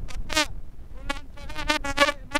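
A buzzy horn tooting in quick short bursts of slightly wavering pitch, several toots in close succession.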